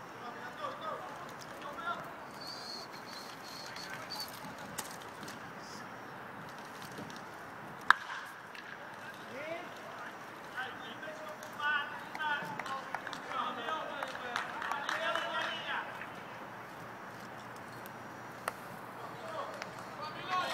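Outdoor ballpark ambience with scattered voices and calls from people in the stands and on the field, busiest in the second half. A single sharp crack of the baseball striking something on the field about eight seconds in is the loudest sound.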